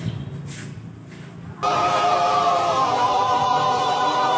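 A sustained choir-like chord, voices holding an 'aah' on several steady pitches, cuts in suddenly about one and a half seconds in and holds loud and unchanging. Before it there is only faint outdoor background.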